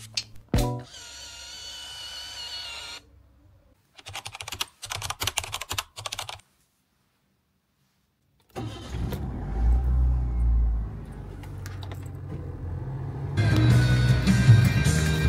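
A compact film camera's back clicking shut, then its motor whirring for about two seconds as it winds the newly loaded film on. A run of quick clicks follows after a pause, and later a low, steady rumble of a car heard from inside the cabin.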